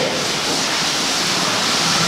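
A chalkboard duster wiping across the board: a steady, even hiss.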